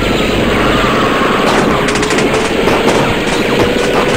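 Battle sound effects: dense, continuous machine-gun and rifle fire, with a whistling tone that falls in pitch over the first second and a half.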